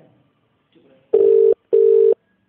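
Telephone ringback tone heard by the caller while the line rings: a double 'ring-ring' of two short, steady, low buzzy tones, starting about a second in. This is the Indian-style ringback cadence.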